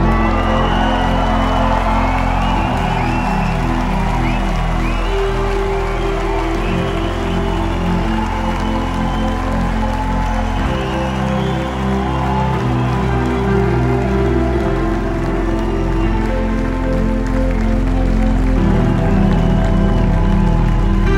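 Live band's slow intro music: held chords that change every few seconds over a steady low bass, with a crowd cheering over it.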